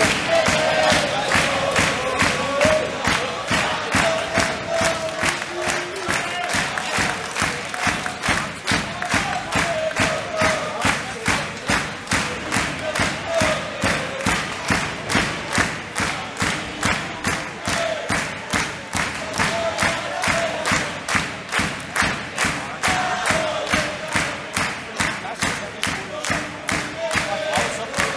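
Spectator crowd clapping in a steady rhythm, about two claps a second, with voices chanting over the clapping.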